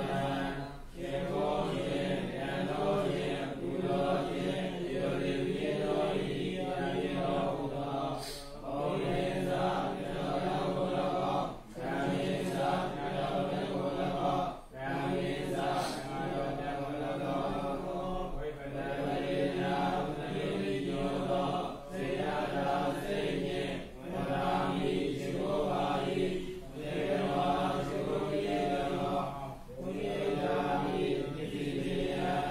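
A Burmese Buddhist monk reciting Pali text in a chanting tone, in held, even-pitched phrases, with a short pause for breath every few seconds.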